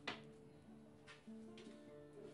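Acoustic guitar played quietly, with no singing: a strum at the start, then a couple of softer plucked notes, the notes left ringing in between.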